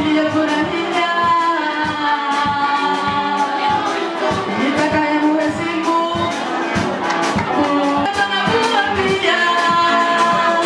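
Live singing into microphones over amplified music with a steady beat.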